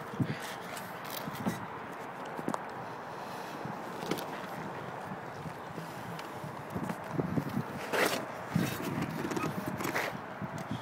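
Mazda Miata soft top being folded down by hand: the fabric rustles and scrapes, with a few clicks and knocks from the folding frame, the loudest about eight seconds in.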